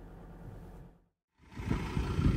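Faint, steady low drone of a 4WD ute's engine as it tows a caravan past. It breaks off into silence about a second in, then a louder low rumble comes in near the end.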